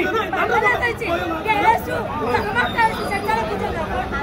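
Speech only: several people talking over one another.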